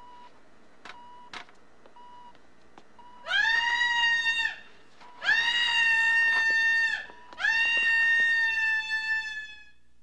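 A woman screaming three times in long, high, held screams with short gaps between. Each scream swoops up in pitch at its start. A few short beeps come before the first.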